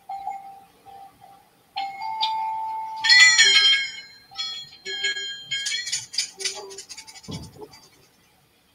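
Closing seconds of a screen-shared video's soundtrack over a video call: a steady high tone, then several high pitched tones that waver and break off, loudest a little after three seconds, with a short low thud near the end.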